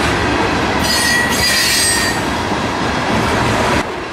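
Loaded covered hopper cars of a grain train rolling past: steady wheel-on-rail noise, with a high wheel squeal from about a second in that lasts about a second.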